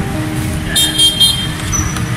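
Street traffic noise of passing motorbikes and cars, with a short broken vehicle horn toot about a second in.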